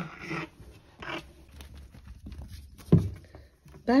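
Kittens play-fighting on a fabric cushion: scattered soft scuffles and small knocks, with two short breathy bursts near the start and one sharp, louder thump about three seconds in.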